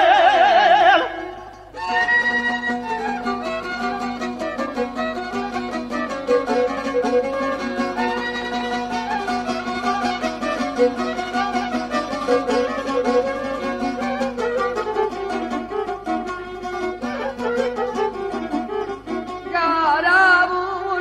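Bosnian izvorna folk music by a male duo. A sung phrase held with strong vibrato ends about two seconds in, then an instrumental interlude of quick string-instrument notes plays, and the singing comes back in near the end.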